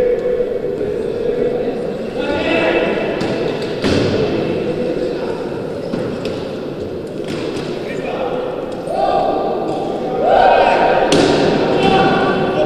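Basketball bouncing on a hardwood court during a wheelchair basketball game, with a few sharp knocks and players' voices calling out.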